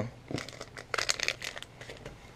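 Plastic fishing-bait packaging crinkling as the packs are handled and picked up, in a few short, irregular rustles.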